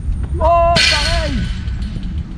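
A man's drawn-out exclamation about half a second in, held and then falling in pitch, with a rush of hiss at its loudest point, over a steady low rumble.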